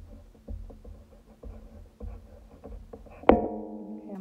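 Red dry-erase marker writing on a whiteboard: a run of strokes with dull knocks as the tip strikes and drags across the board. Near the end comes a loud sharp click, followed by a steady low tone.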